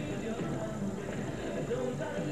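Music playing on a radio broadcast, a wavering voice-like melody over a steady backing.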